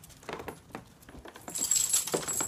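Light scattered clicks and taps, then about one and a half seconds in a bright metallic jingling and clinking that is the loudest sound here.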